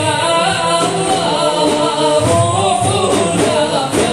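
A chorus of voices singing a Sufi devotional chant, accompanied by a large ensemble of daf frame drums whose low strokes grow stronger about halfway through.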